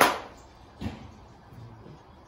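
Golf iron striking a ball off an artificial turf range mat: one sharp, crisp crack right at the start that dies away within half a second. A softer, shorter knock follows just under a second later.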